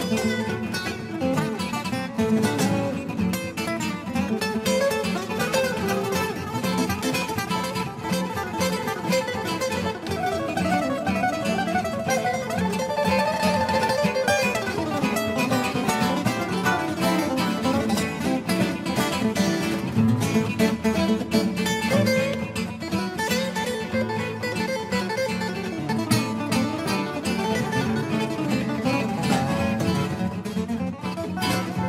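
Acoustic guitars playing instrumental music live, with quick picked single-note lines over a steady low chordal accompaniment.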